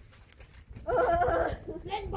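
A child's voice: after a brief lull, a short voiced utterance about a second in.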